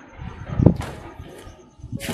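Karate back kick (ushiro geri) done barefoot: a low thud about two-thirds of a second in, followed at once by a short swish of the karate uniform. Another swish comes near the end as the leg is pulled back and the body turns.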